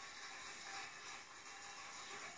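Audience applauding, an even hissing wash of clapping heard through a television's speaker.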